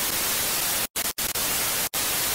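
Television static: a steady hiss of white noise, broken by three brief dropouts, two about a second in and one near the end.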